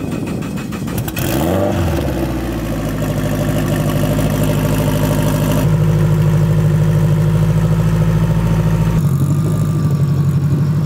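Turbocharged Honda K20 four-cylinder in an AWD Civic sedan starting up: it catches about a second in, revs briefly, then settles into a steady idle. Its pitch drops slightly near the end.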